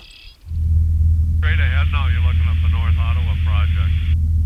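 Steady low drone of a small fixed-wing aircraft's engine and propeller heard from inside the cabin, starting abruptly about half a second in. From about a second and a half in, a thin, radio-like voice talks over the drone.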